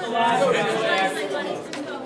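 Several people's voices talking and calling out at once across a gym: spectator and bench chatter, loudest in the first second.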